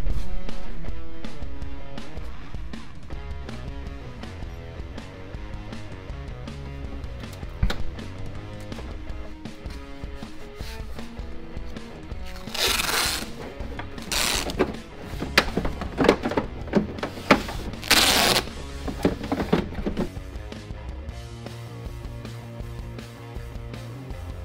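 Background music with a steady beat, broken about halfway through by several short, loud rushes of noise.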